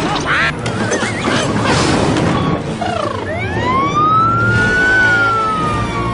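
Cartoon sound effects over background music: warbling, wobbly squeaks in the first two seconds, then a long whistle that rises from about three seconds in and slowly falls away.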